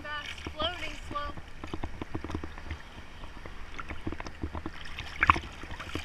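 Seawater sloshing and splashing against a camera held at the surface in small surf, a dense patter of little slaps with one louder splash near the end.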